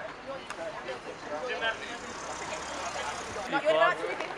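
Street ambience: background voices of people talking, with a car engine running nearby, and a louder man's voice close by near the end.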